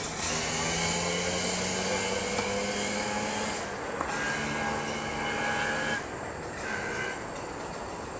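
A steady mechanical hum and hiss that changes pitch a few times, with one or two faint sharp clicks of a tennis ball being struck by a racket.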